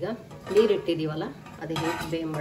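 Stainless steel lid clinking and scraping as it is slid off a pot on the stove, over background music with a plucked guitar.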